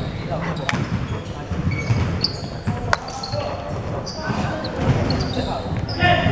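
Basketball gym after the final whistle: indistinct chatter of players and people courtside, with a ball bouncing and a few sharp knocks.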